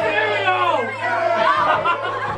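Several people talking and calling out over one another, with a steady low hum underneath.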